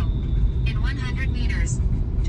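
Steady low rumble of a car driving, heard from inside the cabin, with speech over it.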